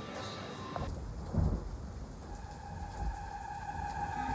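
Low rumble and a couple of dull thumps from a phone being handled against its microphone. Faint background music comes in about halfway through.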